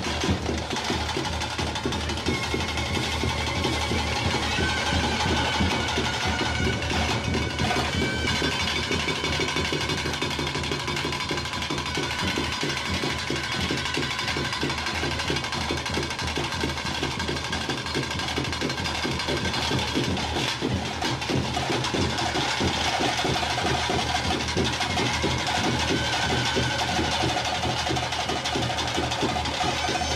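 Traditional temple ritual music: drums beaten fast and without pause, with a high, wavering wind-instrument melody held over them.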